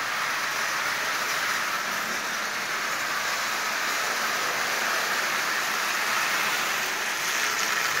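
Marx 898 toy steam locomotive running on metal track: a steady whirring rumble from its motor and its wheels on the rails, a little louder near the end as it passes close.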